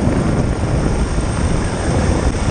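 Helicopter engine and rotor noise heard at the aircraft's open cabin door during a hoist rescue: a loud, steady, dense rush with wind mixed in.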